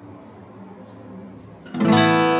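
Acoustic guitar strumming an A2 (Asus2) chord once, near the end; the chord rings on after the strum.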